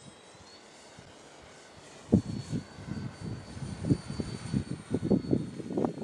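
Electric brushless motor and propeller of an RC model gyrocopter in flight, a thin steady high whine that steps up slightly in pitch about half a second in. From about two seconds in, gusts of wind buffet the microphone in loud irregular rumbles.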